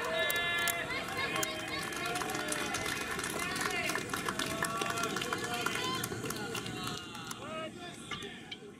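Many voices shouting and calling out across a baseball field, several at once, with scattered sharp claps; the voices die down near the end.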